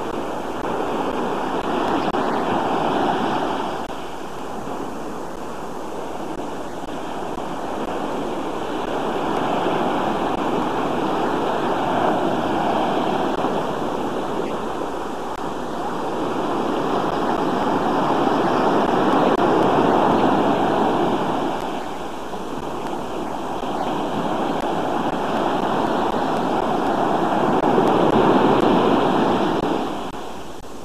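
Sea surf breaking and washing onto a sandy beach. The noise swells and eases several times as the waves come in.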